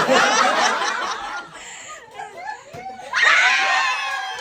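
A group of people laughing together in two loud bursts, the second starting about three seconds in.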